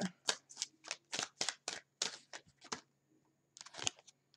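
A deck of oracle cards being shuffled by hand: a quick run of short card flicks, about five a second, that breaks off about three seconds in before a last few.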